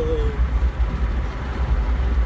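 Steady low road and engine rumble inside the cabin of a moving car. A short held tone, dipping slightly in pitch, ends just after the start.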